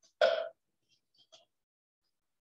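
A person clearing their throat once, briefly, about a quarter second in, followed by a couple of faint ticks about a second later.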